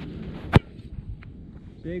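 Football kicked off a metal holder stand: the kicker's foot strikes the ball once, a single sharp impact about half a second in.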